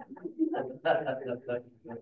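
Speech only: a person talking in the room, picked up through a Zoom meeting, with a short hum about half a second in.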